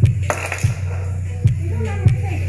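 Bass-heavy music playing loudly through a speaker woofer. There is a deep, steady bass line, and a kick drum beats a little more than half a second apart.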